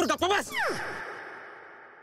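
A voice says a word or two, then gives a long sigh that falls steeply in pitch and fades away gradually.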